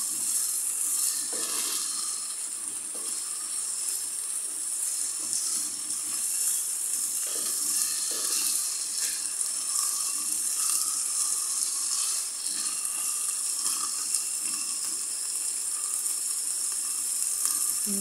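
Minced beef and onions sizzling steadily as they fry in a pan, stirred with a wooden spoon.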